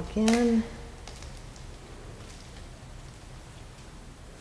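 Light footsteps clicking softly and irregularly on a tile floor.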